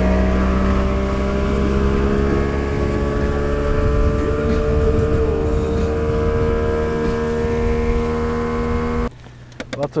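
Evinrude 90 E-TEC two-stroke outboard running at speed, pushing the boat across the lake: a steady drone whose pitch creeps slightly upward. It cuts off suddenly about nine seconds in.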